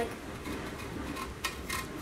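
A lemon being rubbed against the sharp side of a stainless steel box grater to zest it, giving a few faint, short scraping strokes.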